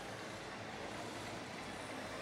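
Faint, steady room noise of a large arena, a low hum under an even hiss, with no distinct events.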